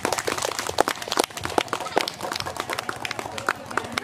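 Audience clapping: many irregular sharp claps throughout, with crowd voices underneath.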